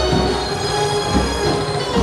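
Festival procession drum band, most likely dhol-tasha, playing loudly and steadily: heavy drum beats underneath a dense metallic ringing.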